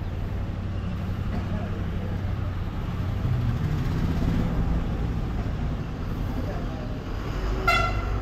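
A petrol dispenser's pump hums steadily while petrol flows into a scooter's tank. A short vehicle horn toot sounds near the end.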